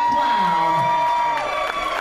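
Theater audience cheering, with one voice holding a long, high whoop that drops away about a second and a half in.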